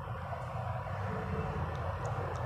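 Steady low background rumble and hum with no speech.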